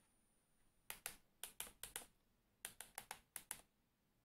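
Keystrokes on a wireless mini keyboard typing out a command: about a dozen sharp key clicks in two quick runs, the first starting about a second in.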